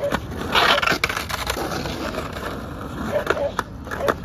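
Skateboard wheels rolling over rough pavement, with sharp clacks of the board about a second in and again near the end as a trick is tried on a curb.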